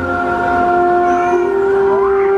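Fountain-show soundtrack playing loudly over outdoor loudspeakers: several long held notes, with a short upward pitch slide near the end.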